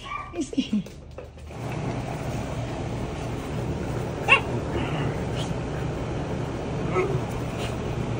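Puppies whimpering and yipping: a couple of short falling whines in the first second or so, then over a steady rushing background noise a single sharp yip about four seconds in and a fainter one near seven seconds.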